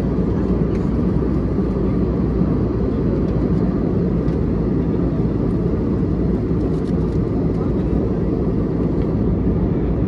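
Jet airliner cabin noise at cruise, heard from a window seat: a steady, unbroken low rumble and rush of engines and airflow.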